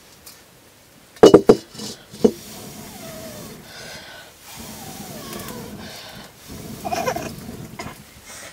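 A metal wok is set down on a stone hearth with three sharp clanks in quick succession about a second in, then a lighter knock. After that come faint, wavering high cries.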